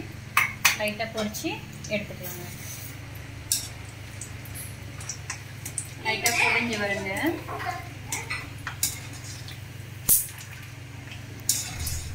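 Wire-mesh frying strainer clinking and scraping against an aluminium kadai of hot oil, in a run of small metal knocks, with one sharp knock about ten seconds in.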